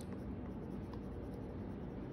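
Colored pencil shading on paper: a faint, steady scratching.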